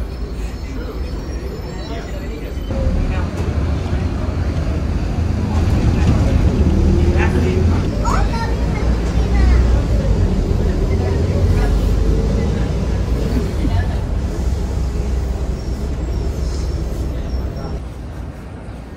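Inside a moving city bus: the engine and road rumble, swelling about three seconds in and easing off toward the end, with passengers' voices in the background.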